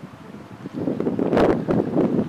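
Wind buffeting an outdoor microphone: quiet at first, then growing loud after about half a second, with a sharp gust hit near the middle.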